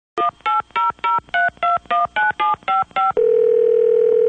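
Touch-tone telephone dialing eleven digits, short two-note beeps at about four a second. Just after three seconds in, a steady tone on the line takes over as the call rings through.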